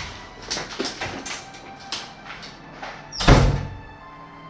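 Light knocks and scuffs of someone moving about, then one loud thump about three seconds in.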